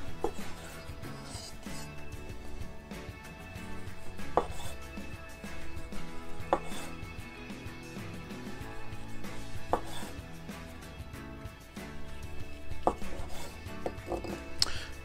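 Chef's knife slicing peeled clementines into thick rounds, the blade knocking sharply on a wooden cutting board several times, a few seconds apart.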